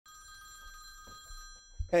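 Mobile phone ringing, a steady electronic ring that stops about a second and a half in, just before the call is answered.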